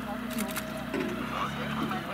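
Aquila A210's Rotax 912 flat-four engine running steadily at low taxi power, with people talking over it.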